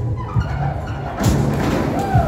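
A diver's entry into the pool off a 3-metre springboard, a splash starting about a second in, over background music with a steady thumping beat, in a large echoing pool hall.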